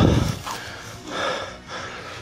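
A man breathing hard at close range: a loud gasp-like breath right at the start, then quieter, rougher breaths, one swelling about a second in.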